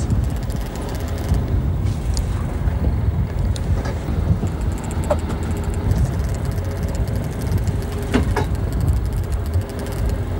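Continuous low rumble aboard a charter fishing boat at sea, with a few faint brief sounds about halfway through and again near the end.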